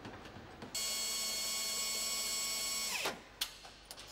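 Hand-held air-line power tool, a nutrunner at a car's wheel hub, running with a steady high-pitched whine for about two seconds, then winding down with a falling pitch, followed by a sharp click.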